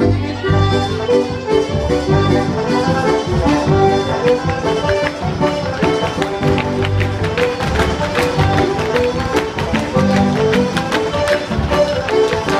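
Live traditional Irish dance music from a small céilí band, a quick reel-like tune with a steady beat, played for set dancing.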